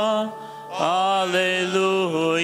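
Sung Gospel acclamation (Alleluia) at Mass: long, sustained sung notes, broken by a short pause about half a second in before the singing picks up again.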